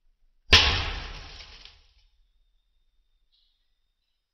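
A pencil lead exploding as a 2.8 mF capacitor bank charged to about 400 V dumps roughly 100 A through it. It is a single sharp bang about half a second in, with a noisy tail that dies away over about a second and a half.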